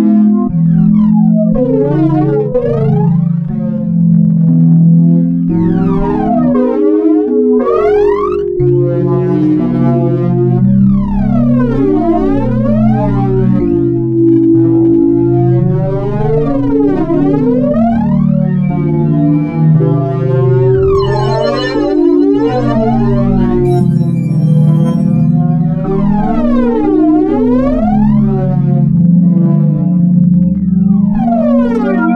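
Ambient electronic synthesizer music: sustained low drone chords under repeated sweeping tones that glide up and down in pitch every few seconds, crossing one another. A brief high, glittering layer joins about two-thirds of the way through.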